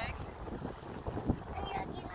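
Wind buffeting the microphone, an uneven low rumble, with faint voices near the end.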